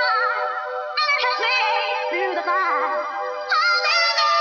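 Hardcore dance track in a breakdown: held synth chords under a high, wavering sung vocal, with no kick drum or bass.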